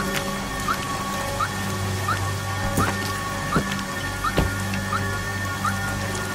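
Steady heavy rain with a film score underneath: a held low drone, a short rising blip about every three-quarters of a second, and three deep hits in the second half.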